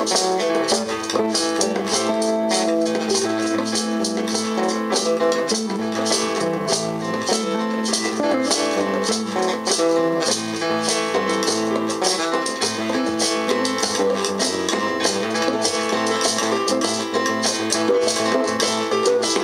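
Live instrumental funk-jazz band playing: bass guitar, guitar and keyboard over a quick, even hand-percussion pattern, with no vocals.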